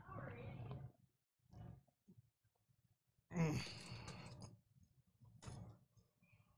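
A man blowing out hard and sighing against the burn of an extremely hot chili chip in his mouth, with a pained voiced 'mm' groan and long breathy exhale about three seconds in, and short puffs of breath between.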